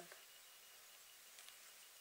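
Near silence: room tone with a faint hiss.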